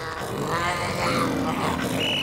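Cartoon bobcat growling, a steady rough snarl with a wavering pitch.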